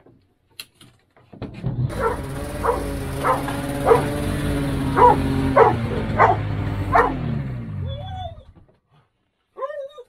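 Polaris Pro X 600 two-stroke twin snowmobile engine running steadily, then falling in pitch and stopping about eight seconds in. Over it, a dog barks about eight times.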